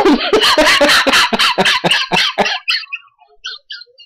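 A man laughing out loud at his own joke, in a run of quick pulses that dies away about two and a half seconds in, trailing off to faint traces.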